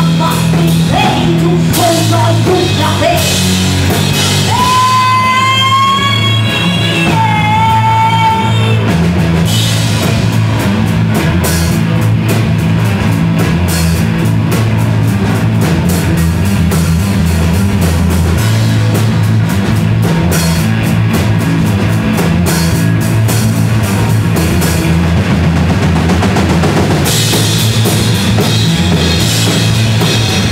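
Live rock band playing loud: electric guitar, bass guitar and drum kit with cymbals. A female voice sings over the first several seconds, then the band carries on without vocals.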